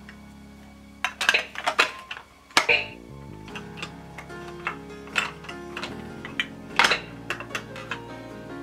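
Hard plastic clicks and clatter of shape-sorter pieces knocking against a plastic toy drum, in quick clusters about a second in and again near seven seconds, over a steady electronic melody.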